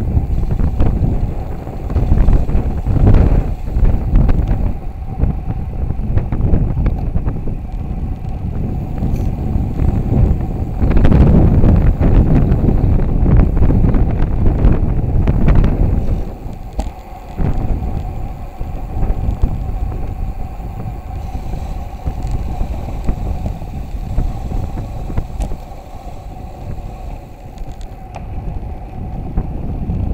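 Wind buffeting the microphone of a camera riding on a fast road-bicycle descent: a low, gusting rumble, loudest for several seconds in the middle and easing off in the last third.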